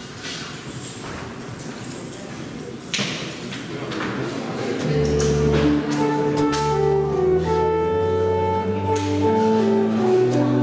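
Church organ starting to play: after a few seconds of hall noise and a knock about three seconds in, sustained organ chords over a low bass line come in about halfway through, held notes changing in steps.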